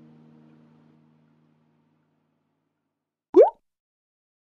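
The last acoustic guitar chord rings out and fades over the first second or two. About three and a half seconds in comes a single short, loud plop whose pitch slides quickly upward, a cartoon-style sound effect.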